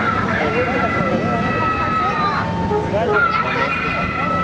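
Classic cars, among them a Ford Thunderbird, run slowly past with a low engine rumble under the chatter of a crowd. A steady high-pitched tone is held for about two seconds, stops, and starts again near the end.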